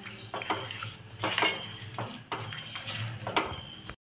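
Ladle stirring thick gravy in a nonstick kadai, knocking and scraping against the pan about seven times at irregular intervals.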